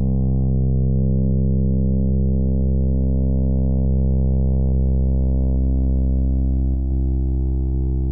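A steady, low electronic drone: one buzzy tone with a stack of overtones, held without change.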